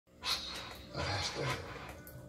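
A low, gravelly man's pirate voice played from the display's recorded soundtrack, beginning its spiel about a quarter second in.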